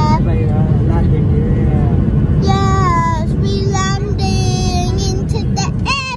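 Airliner cabin noise as the jet comes in to land: a steady low roar with a held hum. Over it, a child's high voice sounds in several drawn-out, gliding notes, from about halfway through.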